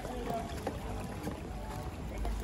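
Steady rush of water flowing in a shallow stream beneath a plank footbridge, with a low rumble.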